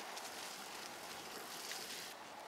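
Steady hiss of mountain bike tyres rolling along a wet path, with a few faint small clicks.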